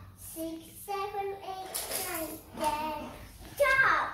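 A young girl singing an English counting song with no accompaniment, holding short notes in a sing-song line, with a loud sliding note near the end.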